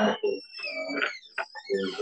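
Two high, thin steady tones, one above the other, sliding slightly downward and lasting about a second, with brief murmured speech around them.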